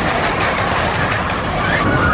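Giant Dipper wooden roller coaster train rumbling and clattering along its track.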